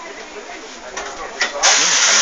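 Espresso machine steam wand hissing: a loud, steady hiss of steam that starts suddenly about one and a half seconds in.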